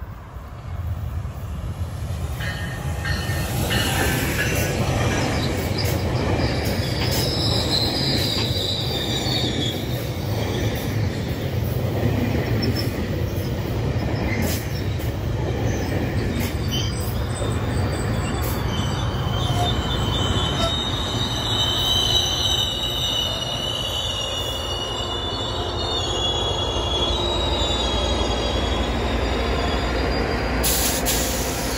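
A GO Transit commuter train of bilevel coaches passes close by, a steady rumble of wheels on rail that swells over the first few seconds as it arrives. High-pitched wheel squeal comes and goes, once early on and again for several seconds in the second half.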